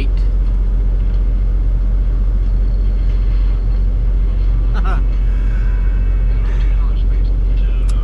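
Heavy truck's engine running, heard inside the cab as a steady low rumble.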